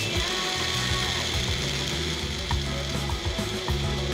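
Personal bullet-style blender running steadily with its cup pressed down onto the motor base, blending a drink of chopped apple and water. Light background music plays underneath.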